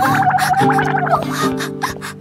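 A warbling cartoon crying wail, about a second long, over background music with held chords.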